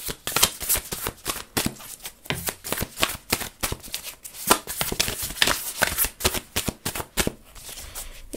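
A deck of tarot cards being shuffled by hand, a quick irregular run of papery flicks and clicks.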